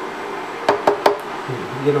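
Wooden spoon scraping salsa out of a glass cup into a soup pot, tapping the glass a few times in quick succession a little under a second in.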